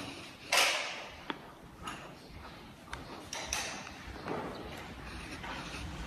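Quiet movement sounds from someone walking with a handheld camera: a brief rustle about half a second in, then scattered light taps and clicks.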